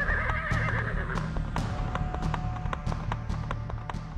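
A horse whinnies: one quavering neigh lasting about a second. Hooves clip-clop after it, over steady background music.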